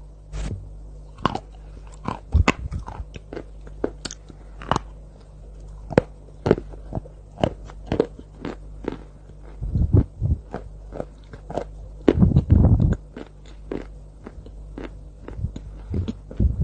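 Close-miked bites and chewing of white chalk coated in cocoa sauce: a run of sharp crunches and crackles, with denser, louder bouts of chewing about ten seconds in and around twelve to thirteen seconds in. A low steady hum lies underneath.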